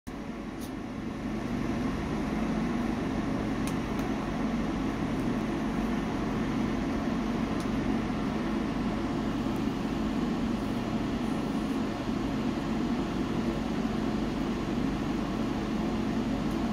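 Fire burning in a wood stove behind its closed glass door: a steady rushing sound with a few faint crackles, one about half a second in and others near four and eight seconds.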